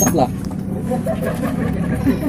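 A motorcycle engine idling steadily, a low even hum under a short spoken exclamation at the start.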